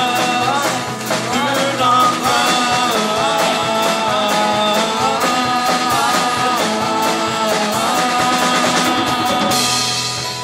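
Live folk-rock band playing a passage without lyrics: acoustic guitars, bass guitar and a drum kit keeping a steady beat, with a gliding melody line above. Near the end the band drops a little in loudness as a cymbal rings out.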